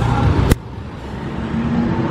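Street traffic with motor scooters riding past. It begins after a louder mix cuts off abruptly about half a second in, and a faint engine note rises near the end.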